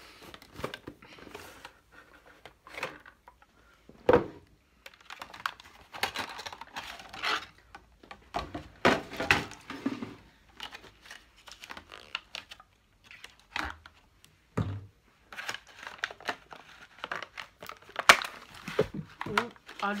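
Plastic and cardboard gift-box packaging crinkling and tearing as a boxed set of body-care bottles is unpacked by hand, with scattered knocks and clicks from the bottles and box. A sharp knock near the end, as something is dropped.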